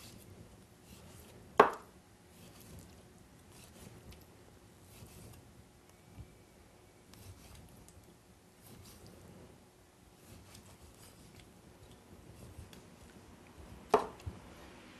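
A knife knocking sharply once on a wooden cutting board about a second and a half in, then faint scattered cutting clicks as the blade lifts segments out of a pink pomelo, with a second knock on the board at the very end.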